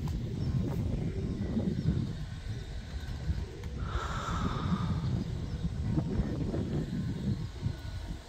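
Wind buffeting the microphone in a steady low rumble, with a brief, fainter higher-pitched sound about four seconds in.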